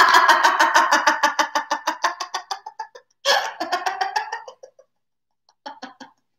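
A woman laughing heartily on the exhale as a laughter exercise. A long peal of rapid ha-ha pulses fades out, a second peal follows about three seconds in, and a short chuckle comes near the end.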